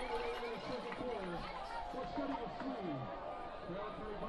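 Stadium crowd: many voices talking and calling out at once at a steady level, the crowd reacting to a made field goal.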